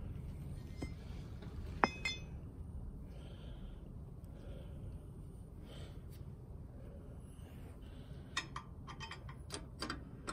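Metal hardware and tools clinking against the steel hitch bracket. There is one sharp, ringing clink about two seconds in and a quick run of small clicks near the end, over a low steady background hum.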